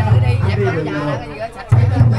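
A crowd of people talking over background music. The sound drops briefly about one and a half seconds in.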